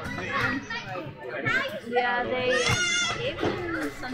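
Children's voices at a playground: overlapping chatter and shouts, with one loud, high-pitched child's call about two and a half seconds in.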